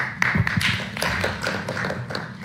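A few people clapping their hands: a short round of scattered applause.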